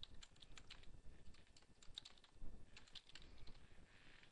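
Typing on a computer keyboard: a faint, quick run of key clicks.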